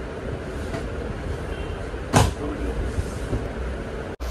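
A steady low rumble, with one sharp knock about two seconds in.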